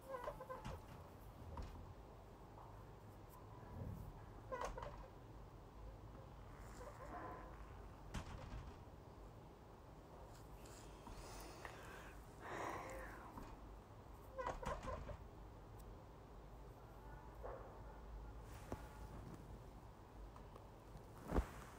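Goat brains frying in oil and onion liquid in a wok on a gas burner: a faint, steady simmer, with a few brief pitched calls in the background.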